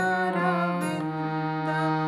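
Harmonium, its hand-pumped bellows sustaining a low held note beneath a slow melody of reed tones. The upper notes change about a second in.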